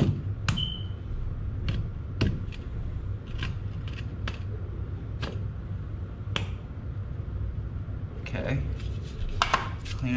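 Steel brick trowel tapping a freshly laid brick down into its mortar bed to bring it level under a spirit level: a dozen or so sharp, irregular taps, one ringing briefly about half a second in, and a quick cluster near the end.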